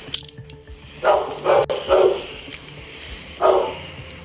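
Four short, loud barks, three close together about a second in and one more near the end, over a few light metallic clicks of handcuffs being ratcheted shut on a wrist.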